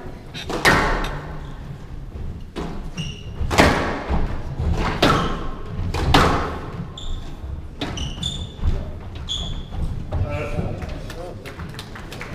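Squash ball being struck by rackets and hitting the court walls during a rally: a string of sharp smacks with a hall echo, about one every second or so, loudest in the first half. Short high squeaks of court shoes on the wooden floor come between the shots near the middle.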